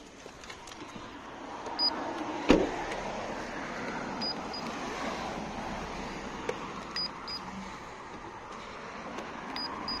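A car door on a 2006 Honda Accord shut once with a loud thunk about two and a half seconds in. A steady noise follows, with a few faint short high beeps.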